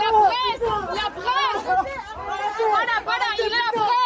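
Agitated voices shouting over one another in French, repeatedly crying 'Il est de la presse !' ('He's press!') in protest as a journalist is manhandled by police.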